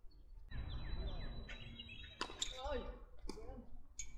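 A tennis serve: a sharp pock of racket on ball about two seconds in, a short call of voices just after, then a second knock about a second later. It is a faulted second serve, a double fault.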